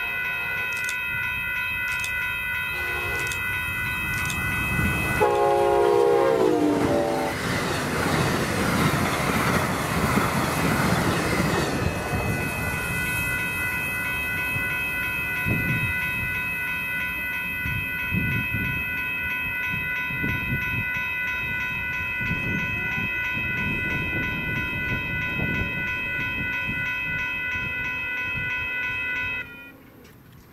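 Amtrak Lincoln Service passenger train led by a Siemens Charger locomotive sounding its multi-note air horn in short blasts. The horn's pitch drops as it passes about five seconds in, then the train rushes by for about five seconds and its rumble fades away. A steady high-pitched ringing sounds before and after the pass.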